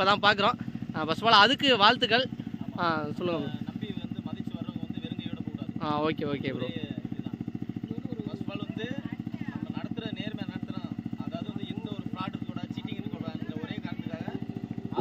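A small engine idling steadily with a quick, even pulse, under a few short bursts of men talking in the first seconds and about six seconds in.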